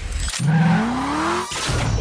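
A car engine revving up, its pitch rising steadily for about a second before cutting off abruptly.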